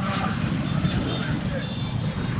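Busy street traffic: vehicle engines running steadily, with faint voices in the background.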